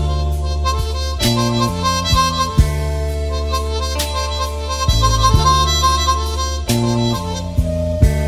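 Blues band music with no singing: a harmonica holds long notes over a bass line that steps from note to note and a steady drum beat.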